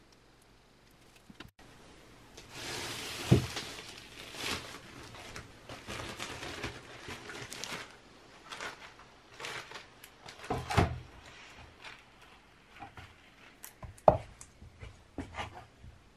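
Black plastic sheet rustling and crinkling for several seconds as it is folded over a glued panel. This is followed by a few wooden knocks as a chipboard board is set down and shifted on top of it, the loudest about 11 and 14 seconds in.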